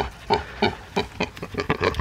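Mini pig grunting close up, a quick string of short grunts, several a second.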